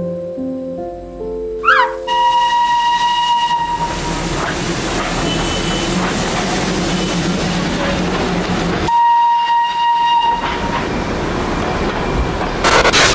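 A steam locomotive whistle blows a steady high note over a loud hiss from about two seconds in. It stops about nine seconds in, then sounds again briefly. Soft music with separate sustained notes plays before the whistle starts.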